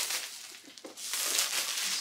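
Plastic shrink-wrap film being torn and pulled off a boxed tablet, crinkling, louder in the second half.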